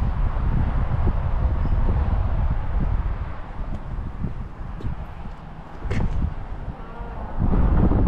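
Front air suspension bags venting air through the valves as the car lowers to its 60 psi preset, a hiss that fades out after a few seconds, over wind buffeting the microphone. A single click about six seconds in.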